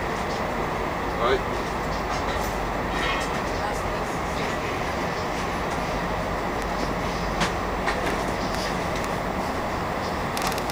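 Steady running noise of a moving passenger train heard from inside the carriage, with a few short clicks.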